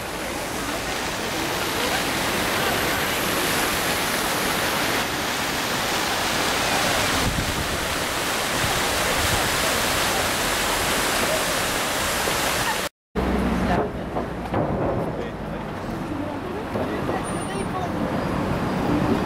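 Fountain water splashing into a pool, a steady dense rushing hiss. About thirteen seconds in it cuts off abruptly and gives way to quieter outdoor sound with voices.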